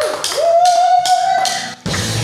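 Drumsticks clicking a count-in, about four clicks a second, with a pitched tone gliding up and holding over them. Near the end the full rock band comes in with drums, bass and guitar.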